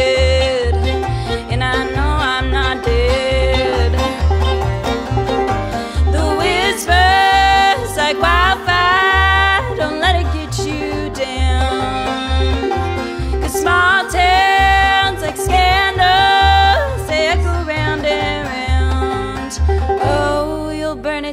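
Instrumental break of a live bluegrass-style song: fiddle playing a sliding, held melody over picked banjo and a steady, pulsing upright bass line.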